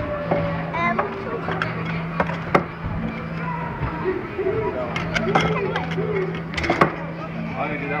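Background voices of people, children among them, over a steady low hum, with a few sharp knocks.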